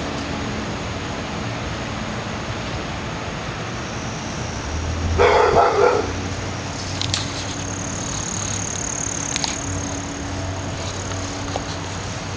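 A dog barking, one short burst about five seconds in, over a steady low background hum.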